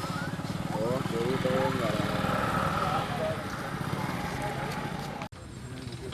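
People talking over a steady low hum, voices most prominent in the first couple of seconds; the sound breaks off suddenly about five seconds in and resumes with a similar hum.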